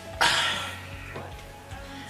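Music playing quietly in the background, with a short, loud hissing burst just after the start that fades over about half a second.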